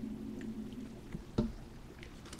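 Handling of a crumpled paper food wrapper: a few faint crinkles and one sharp click about one and a half seconds in, over a low hum that fades away in the first second.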